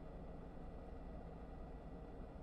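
Quiet room tone: a faint, steady low hum with no distinct handling or peeling sounds.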